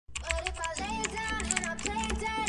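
Computer keyboard typing sound effect, rapid key clicks, over background music with held notes and a pulsing low beat.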